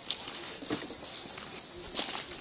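High-pitched, pulsing chorus of insects, crickets or cicadas, with a few faint footfalls on dry leaf litter.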